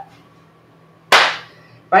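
A single sharp smack about a second in, sudden and loud, its hiss tailing off within half a second.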